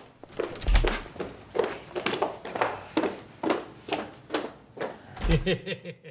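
Footsteps on a hard floor, a steady walk of about two steps a second, with a low thud about a second in and another near the end.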